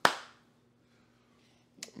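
A single sharp smack right at the start that dies away within a fraction of a second, then near silence with a faint low hum and a small click near the end.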